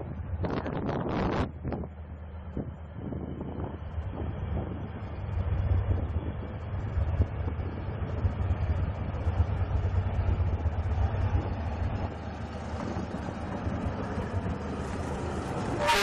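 D19E diesel-electric locomotive pulling a passenger train out of the station, its engine a steady low drone that grows louder as it passes close by, then the coaches rolling past. A brief horn note sounds right at the end.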